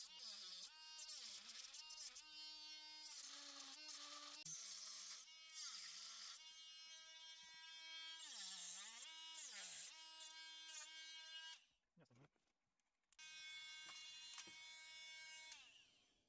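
Cordless rotary tool with a thin cut-off disc whining as it cuts into a plastic air-vent housing, its pitch sagging and recovering several times as the disc bites. It stops for about a second and a half near the twelve-second mark, then runs steadily again.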